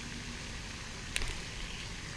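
Spinning reel being handled: one short, sharp, high click just over a second in, over a steady background hiss.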